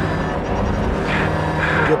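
A race car's engine drones steadily, mixed with a sustained background music score.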